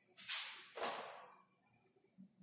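Two quick wiping strokes of a duster across a whiteboard, about half a second apart.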